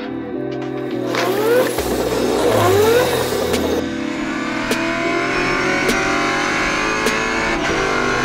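Race car engine revving hard from inside the cockpit, its pitch climbing twice in the first few seconds, then running on at high revs. Background music with a steady beat plays throughout.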